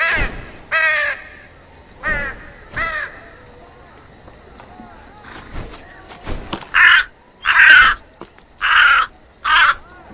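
A crow calling: a few short falling cries in the first three seconds, then four loud, harsh caws in quick succession near the end.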